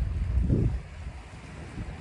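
Wind buffeting the microphone, a low rumble that eases off about a third of the way in.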